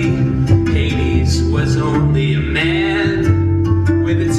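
Live band music with a plucked acoustic guitar over a steady bass line. Sliding pitched tones come in about a second in.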